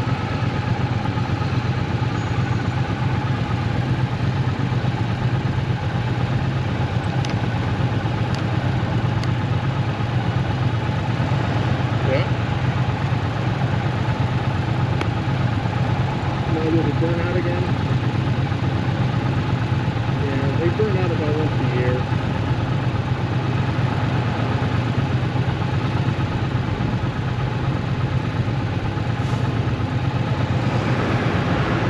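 Triumph Bonneville T120's parallel-twin engine running steadily, its low note holding the same pitch throughout.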